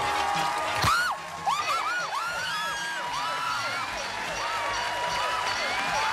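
Game-show music with excited high-pitched screaming and whooping from the contestants, as they find the hidden $5,000 prize, over a cheering studio audience. There is a sharp hit about a second in, followed by a string of rising-and-falling yells.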